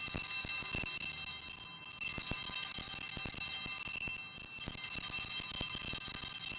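Altar bells (a cluster of small Sanctus bells) rung in three shakes, with short breaks about two and four seconds in, marking the elevation of the chalice at the consecration.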